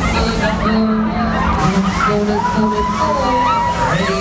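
A voice calling in long, drawn-out phrases over the steady noise of a spinning fairground ride, with crowd noise around it.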